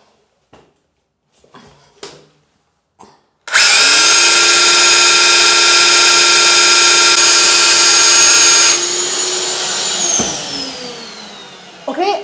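Rotary hammer drill run in plain drill mode, with no hammering, boring into ceramic wall tile. The motor starts suddenly about three and a half seconds in with a loud, steady whine, drops in level about five seconds later, then winds down with a falling whine near the end.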